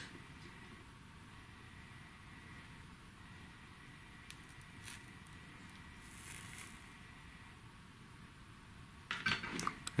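Quiet workbench room tone with a faint steady high whine and a few faint clicks and handling rustles while wire is soldered onto a resistor lead, the rustling growing louder near the end.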